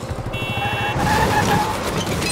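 Designed car sound effect: an engine starts and revs with a rapid low pulsing rumble, and a squeal-like tone glides across the middle of it. A brief high electronic tone sits in the first half.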